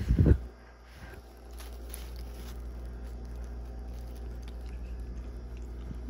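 A bite taken out of a soft tortilla taco, with a loud short thump right at the start, then faint chewing with small crackles over a low steady hum.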